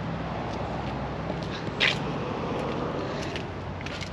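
A steady low hum with a light background hiss, and a short scuff about two seconds in, as the camera is carried on foot around a parked van.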